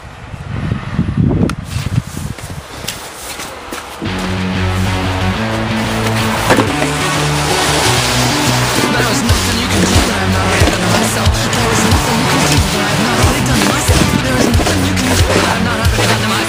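Plastic snow shovel scraping over snow and paving stones in irregular strokes. About four seconds in, loud music with a steady bass line comes in and stays on top, with the scraping still heard under it.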